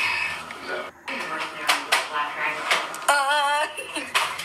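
Indistinct voice sounds with a few clicks, a brief dropout about a second in, and a short wavering high-pitched note a little after three seconds.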